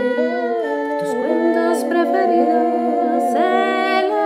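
Music: a woman singing long held notes, with several voices sounding together in harmony and no words clearly made out.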